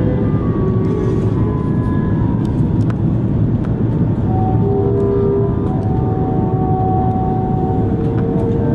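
Cabin noise inside an Airbus A330-300 airliner on final approach with flaps extended: a loud, steady rumble of airflow and engines.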